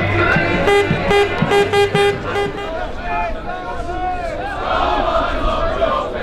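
Football crowd chanting: a run of about six short notes on one pitch about a second in, then singing that rises and falls in pitch.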